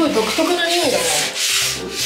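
Sponge scrubbing a wet glass bathroom mirror coated with Sunpole acid cleaner, in repeated back-and-forth strokes, to wear off hard-water scale.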